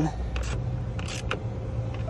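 A few sharp clicks from a socket ratchet tightening the battery hold-down clamp bolt, over a steady low hum.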